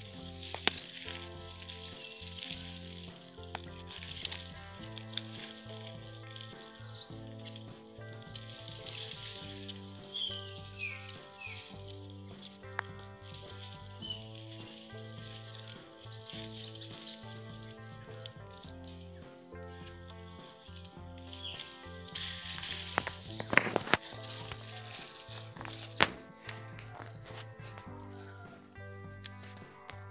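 Background music with a steady, gently changing melody, with high bird-like chirps every few seconds and a few sharp clicks about two thirds of the way in.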